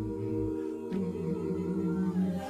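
A cappella voices holding long, low sustained notes, moving to a new pitch about a second in.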